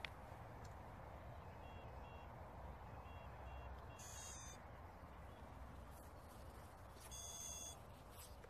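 Faint electronic start-up beeps from a quadcopter's brushless motors, played by the ESCs: a few short paired beeps, then two brief multi-tone chirps about three seconds apart, the sign that the ESCs are initialising and arming.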